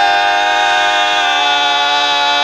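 Barbershop quartet of four unaccompanied men's voices holding one long, steady chord.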